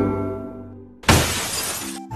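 Logo-intro sound effects: a ringing chime tone fades out. About a second in, a sudden breaking-glass sound effect dies away over most of a second.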